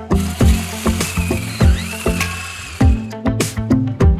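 Background music with a steady plucked-string beat. For about the first three seconds a ratcheting whir sits over it: a long reel tape measure being cranked in.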